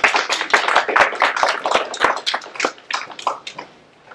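A small audience applauding, with individual hand claps distinct. The applause thins out and dies away near the end.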